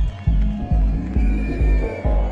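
Electronic club track playing loud over the sound system during a DJ set, driven by a heavy bass kick in a broken, uneven rhythm with higher synth or sampled tones above it.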